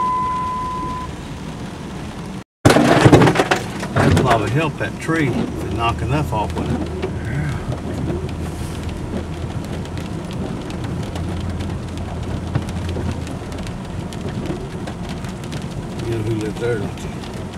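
Car driving, heard from inside: a steady low drone of engine and road noise. A steady high beep sounds in the first second, the sound drops out briefly about two and a half seconds in, and a loud burst of noise with muffled voices follows for a few seconds before the drone settles.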